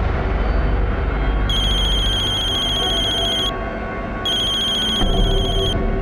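A phone ringing twice with a high, trilling electronic ring, each ring lasting about two seconds, over a low, tense background music drone.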